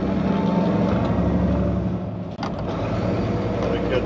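Semi truck's diesel engine pulling steadily under load, heard from inside the cab as it accelerates up the on-ramp. About two and a half seconds in the sound briefly drops away with a click, then comes back.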